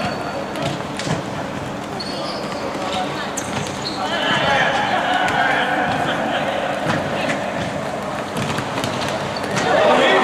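Futsal game sounds in a sports hall: sharp knocks of the ball being kicked and struck, over unintelligible shouting from the players. It gets louder near the end as a shot goes in on goal.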